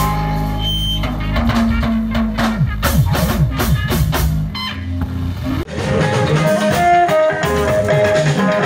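Live gospel band music with drums, bass and guitar. It has a run of quick drum strikes in the middle, then switches abruptly to a different song a little before six seconds in.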